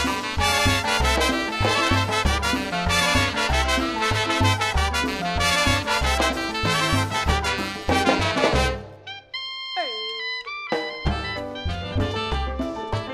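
Live tropical dance orchestra playing, with congas, bass and horns over a steady dance beat. About nine seconds in the band stops except for a few held notes, one sliding down in pitch, and then the full band comes back in.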